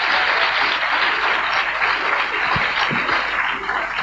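Live audience applauding: dense, steady clapping that holds at an even level throughout.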